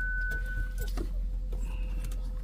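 Low, steady rumble of a BMW car idling, heard from inside the cabin, with a thin, steady high tone that stops a little under a second in and a few soft clicks.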